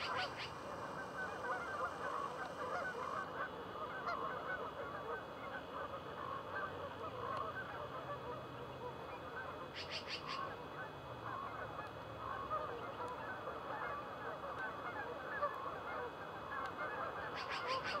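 A large flock of Canada geese honking continuously, with many overlapping calls merging into a steady chorus.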